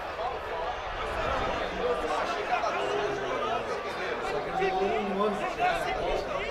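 Indistinct voices calling out on and around a football pitch: several people shouting and talking at once at a distance, with no single voice standing out.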